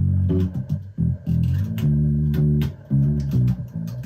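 Electric bass guitar playing a short line of plucked low notes, some short and some held for about a second.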